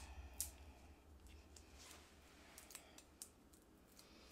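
Near silence with a few faint, scattered clicks and light rustles of small craft supplies being handled on the work table.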